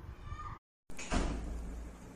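Brief dead silence at an edit, then a steady low rumble with hiss as a new recording begins.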